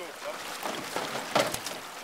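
River water moving and splashing around a drift boat, with a brief louder sound about one and a half seconds in.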